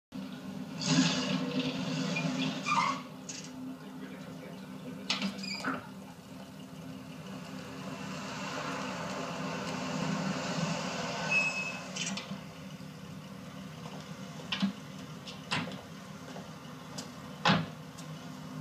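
Street ambience from a film soundtrack, played through a TV speaker and re-recorded: a steady wash of noise over a low hum, swelling twice, with a few short sharp knocks in the second half.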